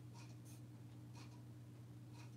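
Near silence: room tone with a low steady hum and a faint tick about once a second.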